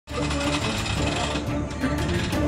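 Opening theme music: held melodic notes over a quick, busy clicking percussion rhythm, starting abruptly right at the beginning.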